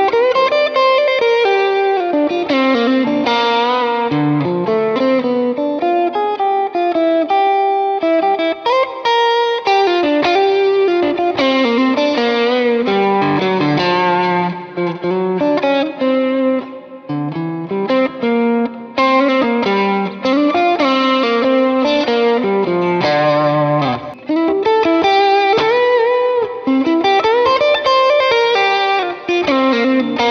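Stratocaster-style electric guitar played through an amplifier, a continuous run of melodic single-note lines and chords, demonstrating the guitar's pickup tone.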